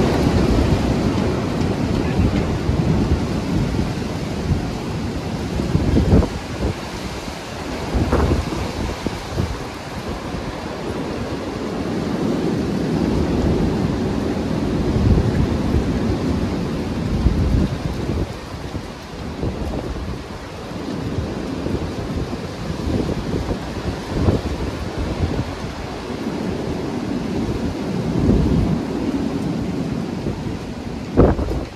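Strong derecho wind gusts roaring through bare trees, surging and easing every few seconds, with the wind buffeting the microphone in occasional sharp thumps.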